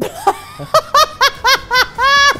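A woman laughing: a quick run of short, high-pitched 'ha' bursts, each falling in pitch, about four a second, starting just under a second in.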